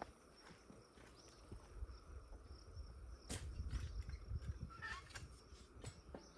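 Faint footsteps and a wheelbarrow rolling over loose dirt, with scattered knocks, over a low rumble and steady insect buzzing. A short laugh near the end.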